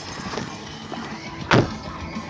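A pickup truck's door shuts with a loud, sharp thump about one and a half seconds in, over the steady hum of the idling truck.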